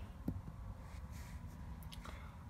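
Faint handling sounds of a small plastic die being shaken in the hand and tossed onto carpet, with a couple of soft clicks over a low room hum.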